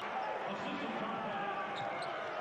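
Live basketball court sound: a ball being dribbled and players moving on the hardwood floor, with faint voices echoing in a near-empty arena.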